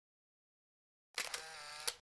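Silence, then a short, faint electronic sound effect just under a second long about a second in, a steady tone with a click where it starts and where it stops, marking the change from one on-screen comment to the next.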